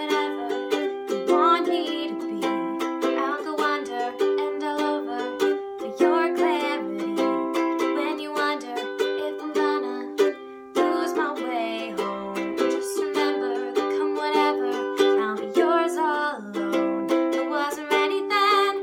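A ukulele strummed in steady chords with a woman singing over it, the voice wavering in pitch on held notes and pausing briefly between phrases, in a small room.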